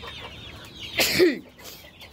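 Desi chickens clucking in a coop, with one short, sharp, loud sound about a second in.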